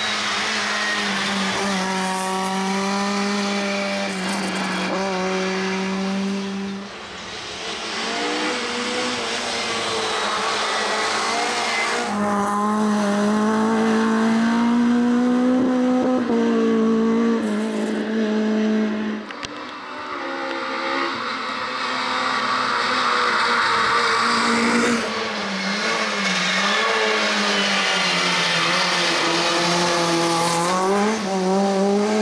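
Škoda Felicia Kit Car hill-climb racer at full throttle, its engine pitch climbing and then dropping at each gear change, several times over. Tyres hiss on the wet tarmac.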